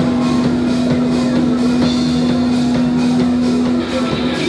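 A rock band playing live: drum kit, electric guitar and electric bass, with one long held note that stops just before the end.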